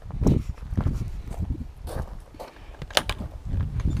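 Footsteps and handling thumps as someone moves around the front of the car, with a sharp click about three seconds in as a soft-top latch on the Alfa Romeo Spider is unhooked.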